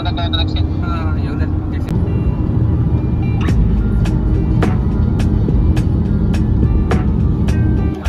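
Car cabin road noise at motorway speed, a steady low rumble, with a brief voice at the start. From about two seconds in, sharp ticks come at irregular intervals over faint music.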